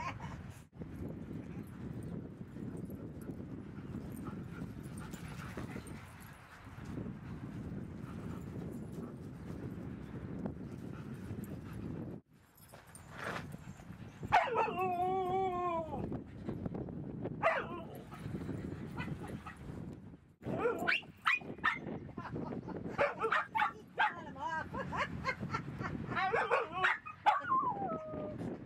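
Dogs vocalizing at close quarters while they play: one long, wavering call about 14 seconds in, then a string of short yips and whining calls through the last several seconds.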